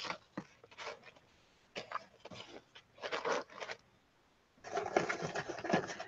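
Hands handling paper and craft supplies on a work table: short, scattered bursts of rustling with light knocks, growing denser near the end.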